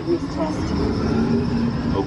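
Test Track ride vehicle running along its track, a steady rumble heard from inside the car, with the ride's onboard audio sounding over it.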